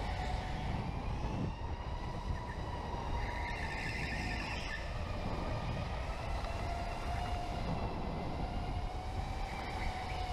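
Electric go-kart motor whining under way, its pitch drifting up and down with speed, over a steady rumble from the kart on the track. A brief hissing burst comes about three to five seconds in.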